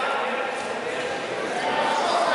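Steady background hubbub of a large indoor sports hall: a murmur of distant voices from around the mats.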